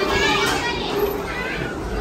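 Children playing: a busy mix of kids' voices, calls and chatter.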